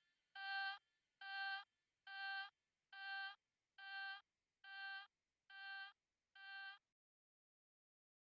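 A single synth beep at one steady pitch, repeated about once a second, eight times, getting fainter each time until it stops near the end: the tail of an electronic dance track.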